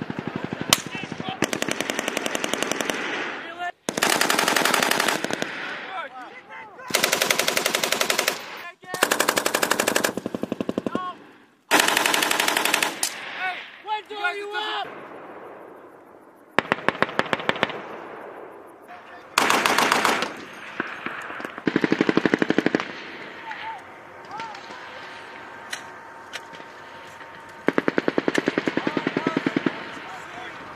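Automatic gunfire on a live-fire range, in repeated bursts of rapid shots each lasting a second or two, about eight bursts with scattered single shots in the quieter gaps between them.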